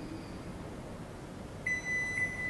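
Glen GL 672 built-in microwave oven's control panel sounding a steady, high-pitched beep that starts near the end, confirming that the child lock has been engaged after the plus and minus buttons were held together.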